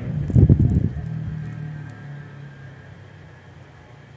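A big motorbike's engine hums low and steady in the distance and fades away over a few seconds. A brief, loud low rumble comes about half a second in.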